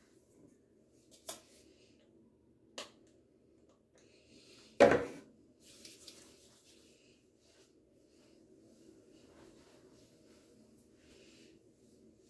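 Handling noises: two light clicks in the first three seconds, then a sharp knock just before the five-second mark, the loudest sound here, followed by faint rustling, all over a steady low hum.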